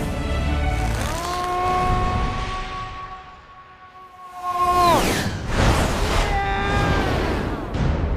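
Film trailer score: a low boom, then a long held note that slides down and breaks off into loud crashing hits about five seconds in, followed by a shorter held note.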